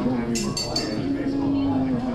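A few light tableware clinks with a short ring about half a second in, over the murmur of voices and background music in a large room.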